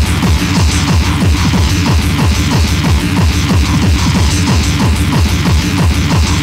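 Loud electronic dance music from a 1994 rave DJ mix recorded on cassette tape, running continuously with a fast, dense beat and heavy bass.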